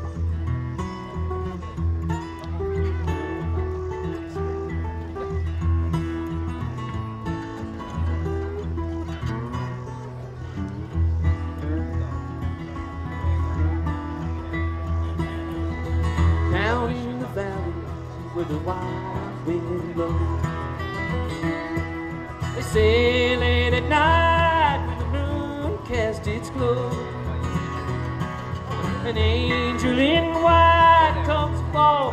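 Acoustic bluegrass band (guitars, mandolin, banjo, dobro and upright bass) playing live, the instrumental introduction to a song before the vocals come in. Sliding, wavering notes stand out about halfway through and again near the end.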